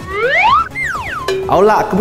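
Edited-in cartoon-style transition sound effect: a whistle-like tone sliding up, then a second one sliding down, over background music. A man starts speaking near the end.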